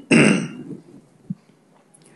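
A man clears his throat once, briefly, into a close headset microphone.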